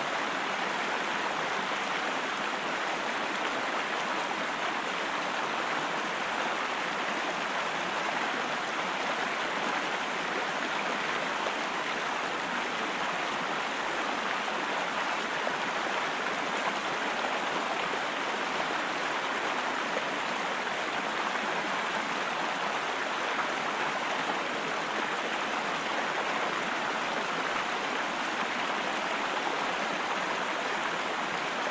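Steady rush of a shallow, rocky river running over stones in rapids.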